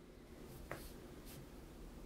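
Very quiet room tone with one small click a little under a second in and faint brief hisses.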